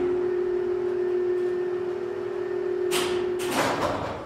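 A steady low hum, held on one pitch for about three and a half seconds, cut off as a loud whoosh sweeps through near the end.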